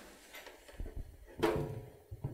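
Plastic food containers handled on a stainless-steel worktop: a few light knocks and clicks, with a short sharper knock and a brief voice-like sound about one and a half seconds in.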